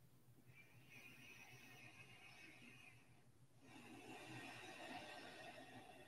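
Near silence: quiet room tone with two faint, long, slow breaths, the second beginning a little after the first ends.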